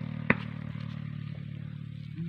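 An engine running steadily in the background and slowly fading, with one sharp click about a third of a second in.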